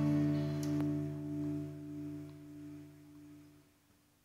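Acoustic guitar's closing strummed chord ringing out and fading steadily, dying away just before the end, as the song finishes.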